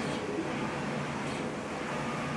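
Brother GTX direct-to-garment printer running as it prints the white ink layer on a black T-shirt: a steady mechanical hum with a few constant tones.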